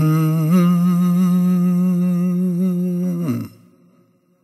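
A man's voice humming one long held note with a slight waver. The note steps up a little about half a second in and stops sharply about three and a half seconds in.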